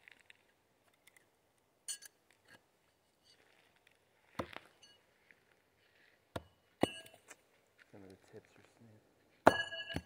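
Non-bladed metal throwing knives hitting a dead tree trunk: several sharp knocks a second or two apart, some with a bright metallic ring. The loudest, ringing strike comes near the end.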